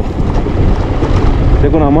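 Wind buffeting the microphone over the low, steady running of a motorcycle riding along a rough dirt road. A man's voice starts near the end.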